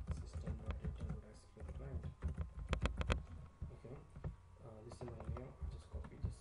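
Typing on a computer keyboard: irregular key clicks, with a quick run of keystrokes about halfway through.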